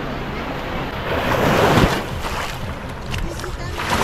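Small waves washing up onto a sandy beach. One wash swells up about a second in and dies away, and another starts near the end, with some wind buffeting the microphone.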